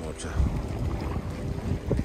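Wind buffeting the microphone in an uneven low rumble.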